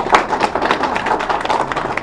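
Applause: many hands clapping at once in dense, irregular claps, rising about a second before and fading just after.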